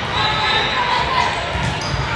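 Volleyball rally in a gym: ball contacts on the hardwood court, under a steady background of spectators' voices in a large, echoing hall.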